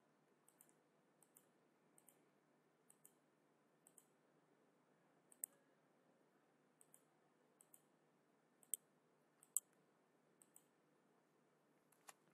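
Faint computer mouse clicks, about a dozen short clicks at irregular intervals, over a low steady hiss.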